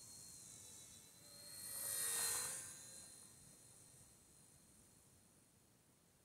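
RC Bell 206 model helicopter flying, its electric motor and rotors giving a faint high whine that swells to its loudest about two seconds in, then fades away.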